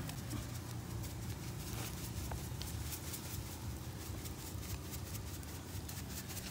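Thin beef steaks sizzling on a wire grill over glowing charcoal: a dense scatter of small crackles over a steady low rumble.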